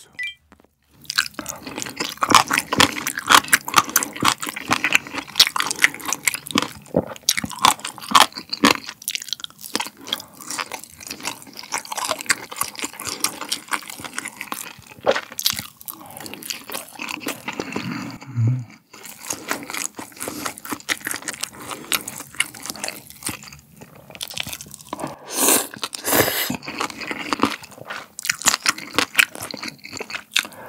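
Close-miked eating: chewing and crunching mouthfuls of cold spicy raw-fish soup and braised pig's trotter, a dense run of irregular crunches and wet mouth clicks. About 25 seconds in there is a longer noisy sound, a slurp of the broth.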